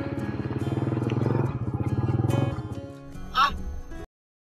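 Background music over a motorcycle engine running close by: a pulsing rumble that swells and fades over the first two and a half seconds. A short, loud burst of noise comes near the end.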